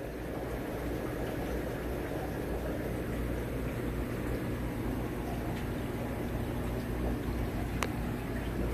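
Steady fish-room background: aquarium aeration bubbling in the water over a low, even hum of air pumps and filtration. A single sharp click comes near the end.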